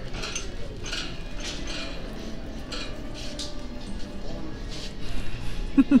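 Thrift-store ambience: faint background music under a low hum, with soft knocks about every half second from someone walking down an aisle.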